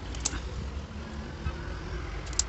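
A sharp click about a quarter second in and a soft knock near the middle as a plastic-framed split-AC mesh air filter is handled, over a steady low background rumble.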